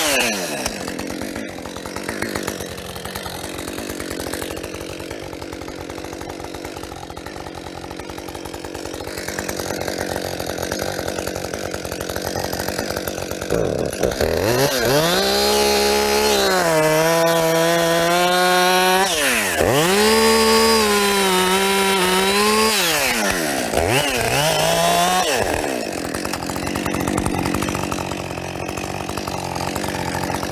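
Two-stroke gas chainsaw cutting into the trunk of a standing tree. It runs quieter for the first dozen seconds, then revs up and holds high three times, for several seconds each, dropping back between the revs.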